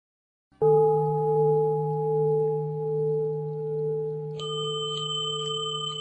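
A struck Buddhist bowl bell sounding about half a second in and ringing on with a long, slowly wavering tone. About four seconds in, a second, higher-pitched bell is struck and rings alongside it.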